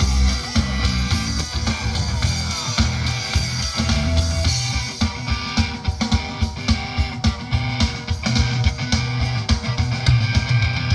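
Live band playing through a PA, heard from within the audience: electric guitar and drum kit, with the drum beat coming through more strongly from about halfway through.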